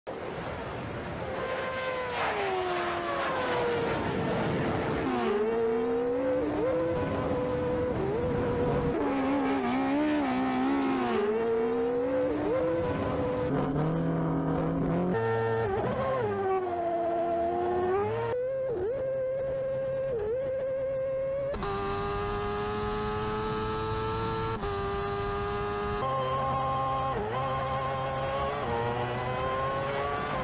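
High-revving racing engines revving and accelerating, their pitch rising and falling repeatedly, with abrupt jumps in pitch several times and a steadier held note in the second half.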